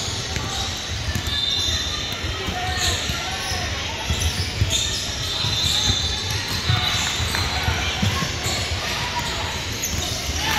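Basketball bouncing on a hardwood gym floor, with irregular thuds of play and players' feet, under indistinct voices echoing in a large hall.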